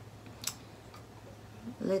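A single short, sharp click of tableware about half a second in, against quiet room tone with a faint low hum.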